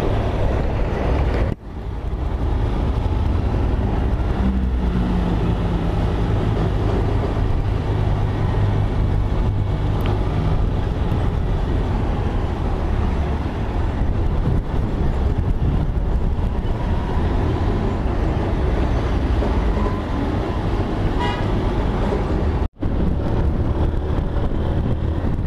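Motorcycle engine running steadily while riding through town traffic, with road and wind noise. The sound drops out briefly twice, about a second and a half in and near the end.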